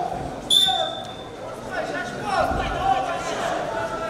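Referee's whistle blown once about half a second in: a short, sharp, steady high note signalling the restart of the freestyle wrestling bout. Voices fill the hall around it.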